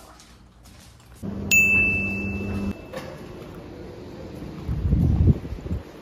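A single electronic beep: one steady high tone that starts suddenly about a second and a half in and holds for about a second and a half over a low hum. A brief low rumble follows near the end.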